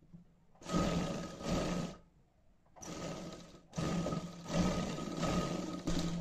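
Surya sewing machine stitching a seam in three runs separated by short pauses, its motor giving a steady whine over the clatter of the needle.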